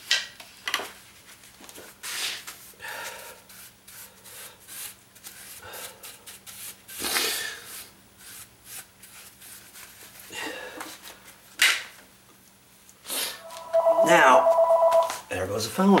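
Irregular swishing strokes of a gloved hand sweeping dust off the bare patch of floor, then, about fourteen seconds in, a telephone ringing with a loud two-tone trill.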